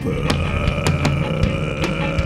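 Live band music: electric guitar strummed over bass and drums, with a steady droning tone held underneath.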